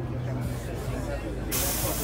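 A sudden loud hiss of compressed air about one and a half seconds in, as the bus's pneumatic passenger doors are actuated to open. It sits over the low, steady hum of the diesel engine.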